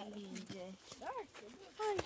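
Voices: a low held hum, then a short high call that rises and falls in pitch about a second in, and a spoken word near the end.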